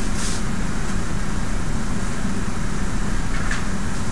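Steady low hum of room background noise, with a brief soft hiss about a quarter second in.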